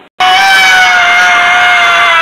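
A loud, long, high-pitched scream of fright, starting suddenly a moment in and held on one note that sinks slightly in pitch.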